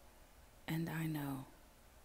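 Speech only: a voice reciting a poem speaks one short phrase about two-thirds of a second in, and the rest is quiet.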